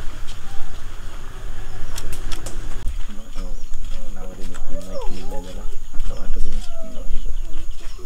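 People talking, mostly from about three seconds in, over a steady low rumble.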